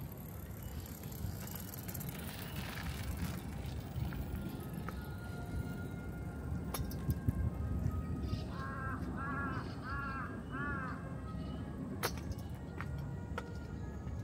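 Outdoor city-park ambience: a steady low rumble with a couple of sharp clicks, and a bird calling four times in quick succession about two-thirds of the way through.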